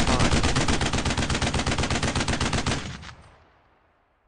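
Machine-gun fire sound effect: a loud, rapid, evenly spaced string of shots that stops about three seconds in and dies away in an echo.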